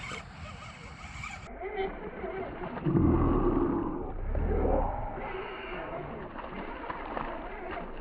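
A hooked largemouth bass thrashing and splashing at the pond's surface as it is reeled in to the bank, loudest about three to five seconds in.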